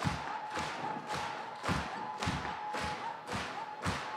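Steady rhythmic thumps in a concert hall, about two beats a second, evenly spaced. A faint held tone sounds under them.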